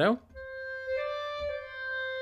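Sampled clarinet (Cinesamples CineWinds Core, legato articulation) played from a MIDI keyboard. One held note comes in about a third of a second in and joins smoothly into a second note about a second in, which holds on.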